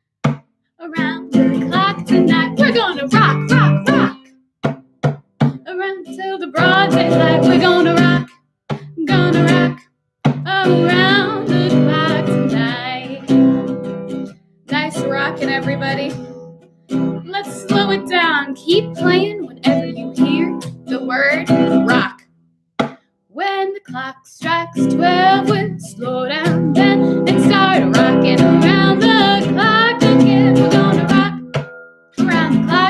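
Acoustic guitar strummed with a woman singing along, the music stopping short for a moment several times before starting again.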